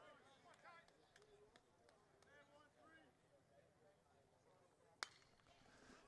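Faint distant voices, then about five seconds in a single sharp crack of a bat hitting a pitched baseball, the hit that becomes a fly ball.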